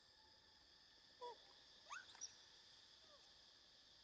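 A few faint, short chirping animal calls, about a second in and again a second later, over a faint steady insect hum.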